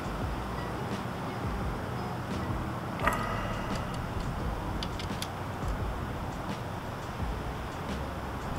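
A few faint metallic clicks from a hand tool tightening a bar-end mirror into a motorcycle handlebar, one sharper click about three seconds in, over a steady low background noise.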